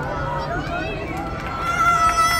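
Voices of people chattering around, without clear words. About a second and a half in, a high-pitched voice, a child's, starts a loud held call.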